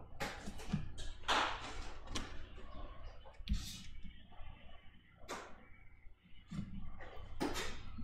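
Baseball trading cards being handled and shuffled by hand: a string of short, irregular rustles and flicks as the cards slide over one another.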